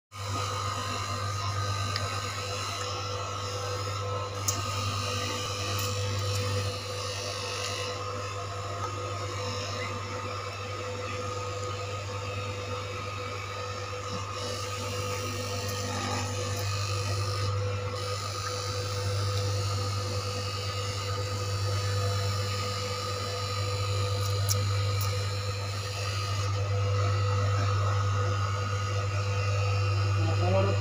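Electric straight-knife cloth cutting machine running with a steady hum as it is guided through a thick stack of fabric layers.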